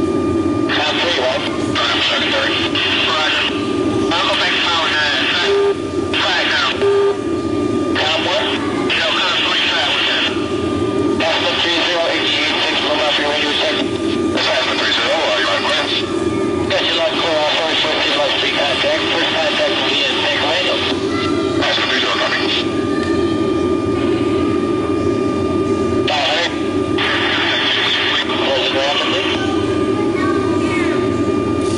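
Soundtrack of an air-refuelling video played over the hall's loudspeakers: the steady drone of a tanker aircraft's cabin in flight, with stretches of garbled intercom and radio voices that cut in and out every few seconds.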